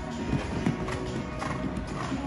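A show jumper's hooves beating on the arena sand as the horse lands from a fence and canters on, a few distinct hoofbeats. Music plays over the arena sound system.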